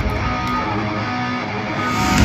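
Heavy metal band playing live over a concert PA, an electric guitar riff to the fore with a lighter low end; the full band's heavy bass and drums come in right at the end.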